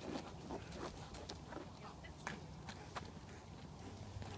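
A police dog moving about on pavement, heard faintly as scattered light clicks over a steady low rumble.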